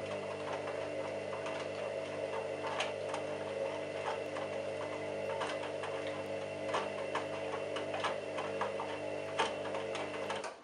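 Candy Smart Touch front-loading washing machine's drum turning during the wash, its motor giving a steady hum with irregular light clicks and taps from the tumbling wet laundry.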